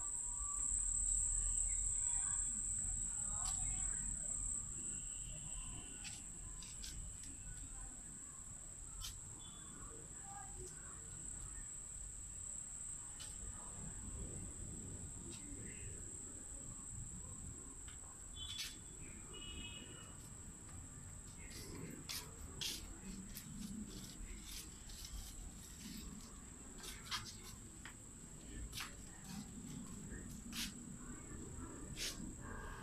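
Steady high-pitched trill of a cricket, strongest in the first few seconds, with scattered sharp clicks over it, more of them in the second half.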